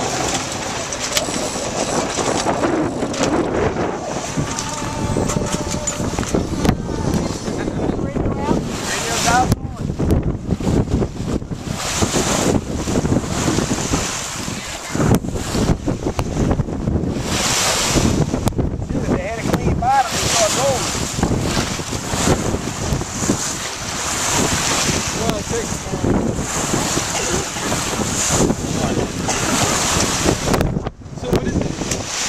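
Wind buffeting the microphone in gusts over the rush and splash of waves against a sailboat's hull, with faint voices at times.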